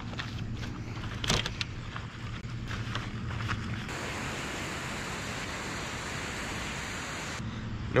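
Wet scrubbing on a bike frame with a chenille wash mitt, then, from about four seconds in, a garden hose spray nozzle hissing steadily as it rinses the bike's chain and drivetrain, stopping shortly before the end.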